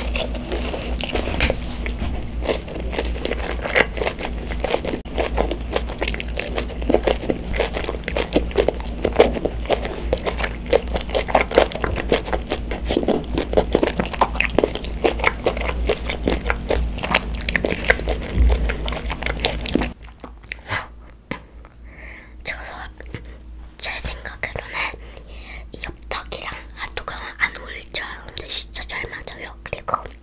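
Close-miked chewing of a breaded mozzarella corn dog, the crumb coating crunching in the mouth. The crunching is dense for about the first twenty seconds, then drops suddenly to quieter, sparser mouth sounds.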